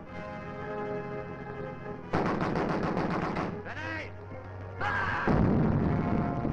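Ship's gunfire in an old film soundtrack: a held orchestral chord gives way about two seconds in to rapid gunfire, then a shout, and a heavy gun blast near the end.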